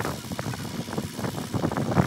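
Diesel engine of a Cat mini excavator running.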